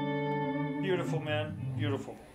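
Electric guitar played through an Eventide H9000 effects processor: a chord rings and sustains, then about a second in new notes come in with a wavering, modulated pitch.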